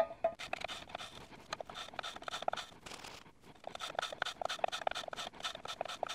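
Back of a steel chisel being rubbed back and forth on 100-micron abrasive polishing paper on glass, wet with honing fluid: a run of short, scratchy strokes with a brief pause about midway. This is the back being lapped flat to grind out the grinding marks.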